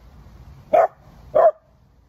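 A dog barking: two short, loud barks about a second in, just over half a second apart.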